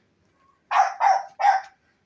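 An animal giving three short, harsh bark-like calls in quick succession about a second in.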